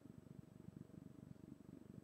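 Near silence: room tone, with a faint low fluttering rumble and a thin steady hum.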